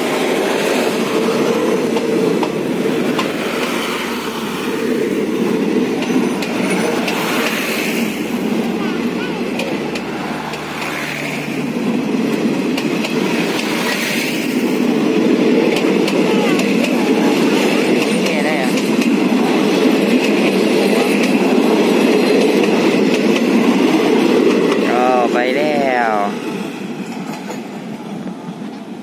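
Passenger train coaches rolling past on the rails, a steady rumble and clatter of wheels on track. It dies away about two seconds before the end as the last coach pulls away.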